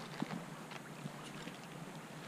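Shallow creek water running and rippling, with wind on the microphone and a few small sharp ticks scattered through it, the loudest about a quarter second in.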